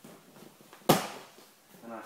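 A single sharp slap on a vinyl-covered training mat about a second in, as a person pushes up from the ground into a standing stance in a technical stand-up.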